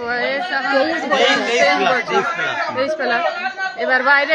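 Several people talking at once, their voices overlapping in loud chatter.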